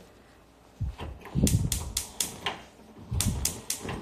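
Gas stove's electric spark igniter clicking rapidly, about four or five clicks a second, in two runs as the burner knob is turned and held, with a low rumble beneath the clicks.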